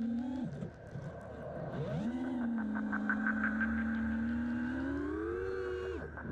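FPV racing quadcopter's brushless motors (Armattan Rooster, Cobra 2307 motors, 5-inch props) heard from its onboard camera as it takes off. The whine rises sharply about two seconds in and holds steady, then climbs higher in pitch about five seconds in.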